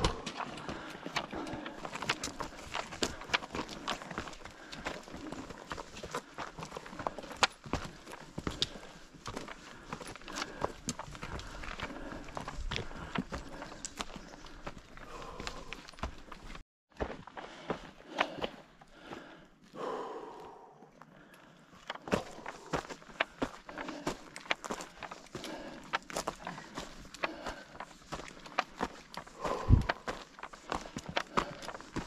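Footsteps on a stony mountain trail, with trekking-pole tips clicking on rock, in a quick, uneven patter. The sound breaks off for a moment a little past halfway, then the steps resume.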